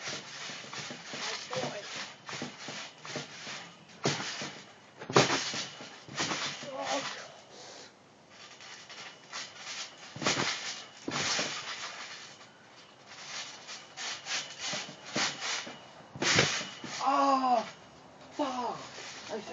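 People jumping and landing on a trampoline: irregular thumps of bodies hitting the jumping mat, the loudest about five seconds in, with others near ten and sixteen seconds.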